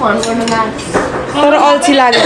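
A few clinks of metal spoons against ceramic bowls as people eat, under women's voices talking.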